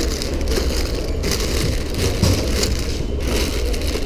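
Clear cellophane flower sleeves crinkling in repeated bursts as wrapped bunches of flowers are handled, over a steady low rumble.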